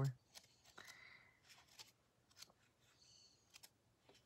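Faint paper rustles and soft clicks of pages being leafed through in a small tarot guidebook, in a quiet small room.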